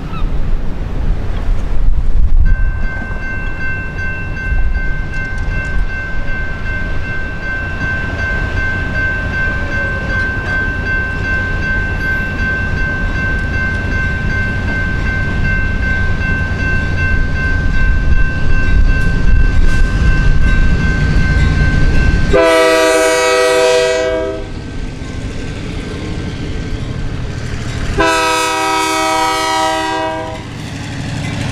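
Approaching diesel locomotives, a Union Pacific EMD GP15-1 leading a GMTX EMD GP38-2: a low engine rumble that grows louder, under a steady high ringing tone that stops about 22 seconds in. The lead locomotive's horn then sounds twice, a blast of about a second and a half and a longer one near the end.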